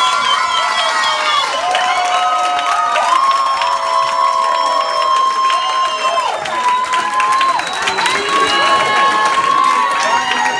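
A crowd cheering, with many voices holding long high shouts over one another and hands clapping throughout.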